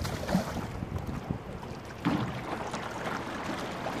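Water swishing and lapping along the hull of a rowing scull under way, with small knocks from the oars and wind on the microphone.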